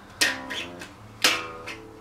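Alvarez acoustic guitar strummed twice, about a second apart, each chord ringing out, over a held low note from an electric bass guitar.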